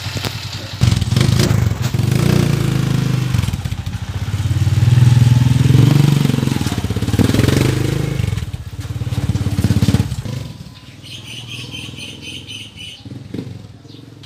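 Honda TMX155's single-cylinder four-stroke engine pulling the motorcycle away on a road test after a carburetor cleaning, rising and falling in pitch as it rides off, then fading about ten seconds in. Near the end, a rapid high chirping.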